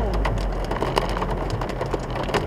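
Heavy rain pattering densely on the car's roof and windscreen, heard from inside the cabin, over a low steady hum from the car's engine.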